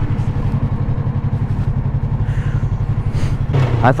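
Yamaha R3 parallel-twin motorcycle engine running under light throttle as the bike pulls away at low speed, a steady, evenly pulsing exhaust note.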